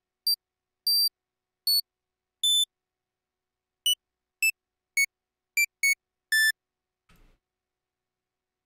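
Ten short, high-pitched synth note previews, one at each click as notes are placed in the FL Studio piano roll, stepping down in pitch overall.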